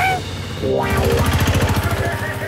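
Cartoon motor-van engine sound effect, a fast even rattling chug that comes in strongly about half a second in.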